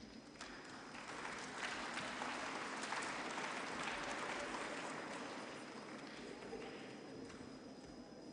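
Footsteps and shuffling of a group of people walking forward across a hall floor, swelling to a peak about three seconds in and then easing off.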